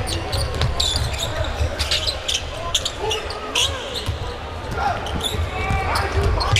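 Basketball being dribbled on a hardwood court during live play. Many short, sharp high-pitched sounds come from the court over a steady low hum of the arena.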